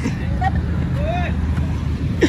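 Steady low rumble of roadside traffic noise, with two short voice calls in the background about half a second and a second and a quarter in.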